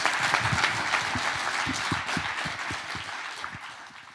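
Audience applauding, dying away gradually through the last couple of seconds.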